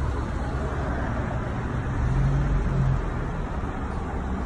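Gas-station forecourt noise while fuel is pumped into a car: a steady low rumble and hiss, with a brief low hum a couple of seconds in.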